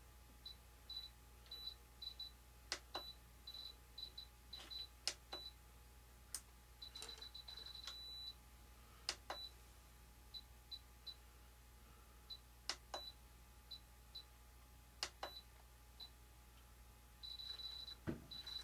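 Faint short beeps from a hand-held RC transmitter as its menu buttons or scroll wheel are worked to set sub-trims, coming in irregular runs at one high pitch, with a longer beep near the end. Several sharp clicks are scattered among them.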